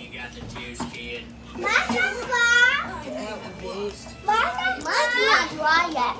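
Young children's voices as they play and call out, with a long high-pitched call from one child about two and a half seconds in and another burst of shouting near the end.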